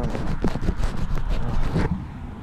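Close handling noise on a GoPro Session 5 action camera: hands gripping and rubbing over the camera body, a rapid run of irregular scrapes and knocks. It stops suddenly just before the end.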